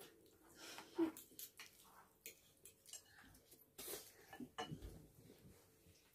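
Metal spoon and fork clinking and scraping against a ceramic bowl during a meal: a scattered series of faint, short clicks.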